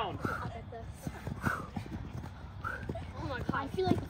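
Footfalls of several players landing on artificial turf during lateral skater hops: an irregular series of short thuds and scuffs.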